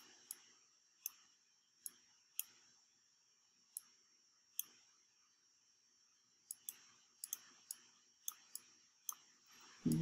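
Faint, sharp clicks of a computer pointing device's button, spaced out at first and then coming in a quicker run in the second half, as on-screen image layers are selected and dragged.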